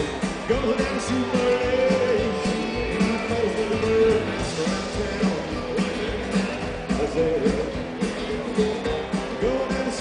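Live country-rock band: a man singing over acoustic and electric guitar, upright bass and drums.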